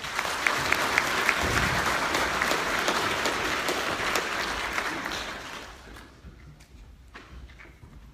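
Audience applauding, starting abruptly and dying away after about five and a half seconds, with a few sharp claps standing out near the start.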